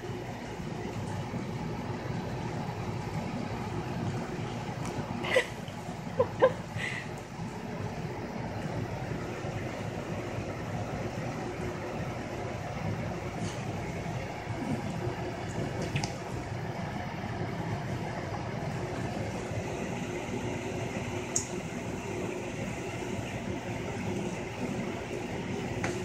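Cavalier King Charles Spaniel puppy wriggling and rolling on a fabric couch while mouthing and pawing a ball: steady rustling and rubbing, with a few sharp clicks about five to seven seconds in.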